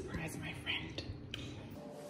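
A woman whispering quietly, fading out after about a second and a half.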